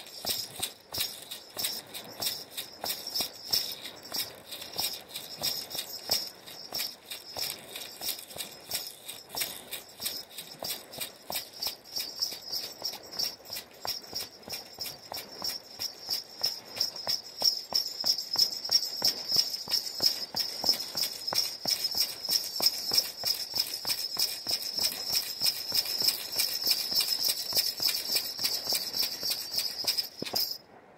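Ankle bells jingling in a steady stamping rhythm of about two to three beats a second, louder from about halfway in.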